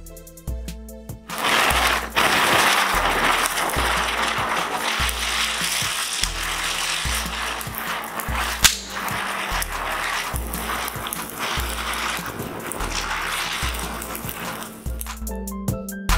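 Ground chakkar firework spinning and spraying sparks: a loud, steady hiss starts about a second and a half in and dies away near the end, with one sharp crack about halfway through. Background music with a regular bass beat plays throughout.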